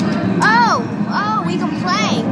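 Short, high-pitched vocal exclamations: three or four brief rising-and-falling calls, like excited 'oh!'s, over a steady low hum of a crowded room.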